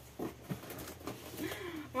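Faint rustling of crumpled packing paper and a cardboard box being handled and lifted, with a short breathy vocal sound early on.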